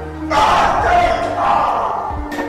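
Loud, harsh shouting that begins about a third of a second in and lasts about a second and a half, over film score music.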